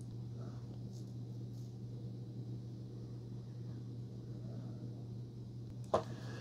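Faint steady low hum, room tone, with a small click just before the end.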